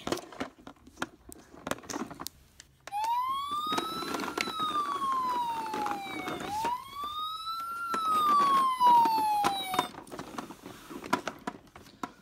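A toy ambulance's electronic siren wailing: the pitch rises quickly and then slides slowly down, twice over, for about seven seconds. Light clicks from the toy being handled come before and after it.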